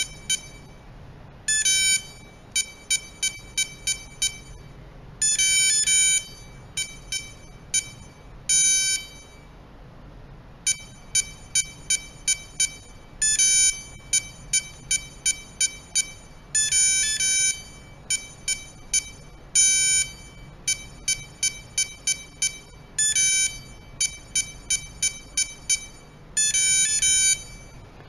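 Touch keypad of an electronic RFID/password locker lock beeping as codes are keyed in: a short beep for each key touched, coming in quick runs, with longer beeps and pairs of beeps between the runs. The long and double beeps are the lock confirming each entry while new user codes are programmed.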